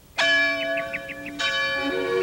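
A church bell tolling: two strikes about a second apart, each ringing on with a rich, slowly fading tone.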